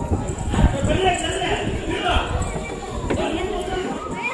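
Indistinct voices of people talking, with irregular low thumps throughout.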